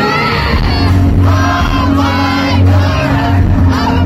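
A K-pop dance track played loud through a concert PA with a heavy steady bass, with fans screaming and cheering over it.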